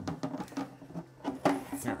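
Hard 3D-printed plastic parts knocking and scraping together as a printed panel is fitted against a printed speaker enclosure, with a few sharp clicks, over a faint steady hum.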